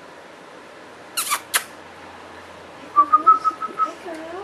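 A person calling the puppies: two sharp kissing smacks about a second in, then a short high whistle-like tone near the end with a low cooing voice beneath it.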